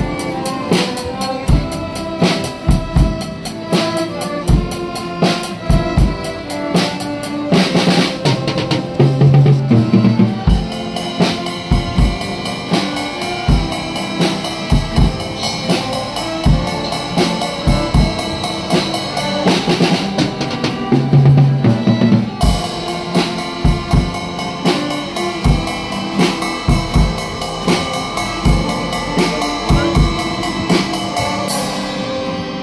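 Live music from a children's ensemble: a drum kit keeps a steady beat under violins, keyboards and guitars playing a tune. The music swells louder, with busier drumming, about nine seconds in and again about twenty-one seconds in.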